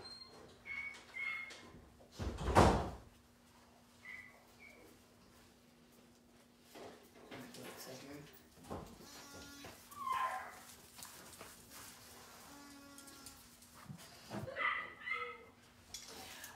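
A few short animal calls scattered over a steady low hum, with one loud knock about two and a half seconds in.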